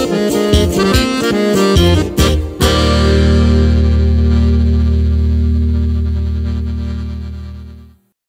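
Sierreño-style band of button accordion, electric bass and acoustic guitar playing the instrumental ending of a corrido: quick runs and a few accented hits for the first two and a half seconds, then a final chord held on the accordion over a low bass note, fading out near the end.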